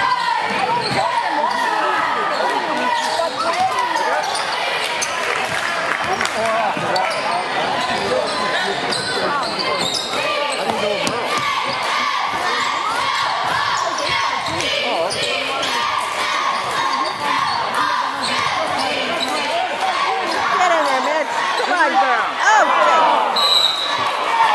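Basketball game in a gym: the ball bouncing on the hardwood court amid many short knocks, over a steady hum of spectators' voices echoing in the hall, a little louder in the last few seconds.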